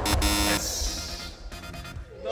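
Edited-in electronic music sting: a buzzy tone in the first half-second that fades away over the next second and a half. It marks a missed shot.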